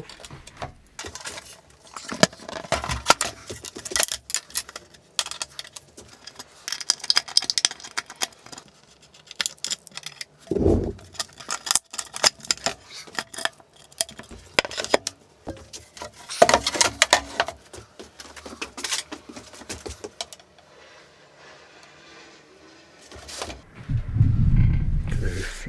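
Metal hardware being prised out of an old wooden door with a screwdriver: irregular metallic clicks, scrapes and clinks as pins and a mortice lock are worked loose, with one dull knock about halfway through.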